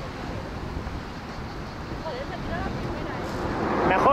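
Wind buffeting the microphone: a steady, low rumbling noise, with a brief faint voice about two seconds in.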